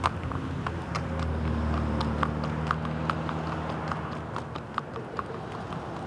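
Horse's hooves clip-clopping on concrete pavement at an unhurried walk, about two to three sharp clacks a second, with a low steady hum underneath for the first few seconds.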